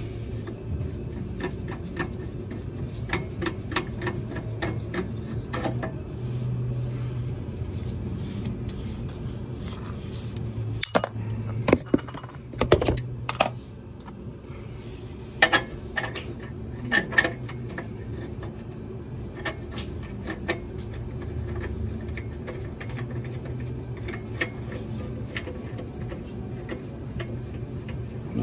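Scattered clicks and light knocks of hands handling a spin-on oil filter and working against a golf cart's underside, heaviest a little before and after the middle, over a steady low hum.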